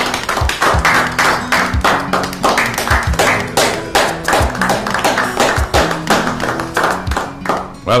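A small group of people clapping their hands in quick, irregular claps, over background music with sustained low notes.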